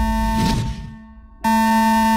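Electric buzz from a wall intercom speaker, sounding as two long steady tones: the first fades out about half a second in, and the second starts about a second and a half in. A low rumble runs underneath.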